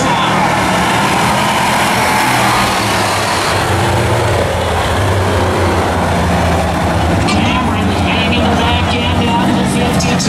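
Bomber-class stock car engines running steadily as the pack laps a speedway oval, the engine note strengthening about midway through.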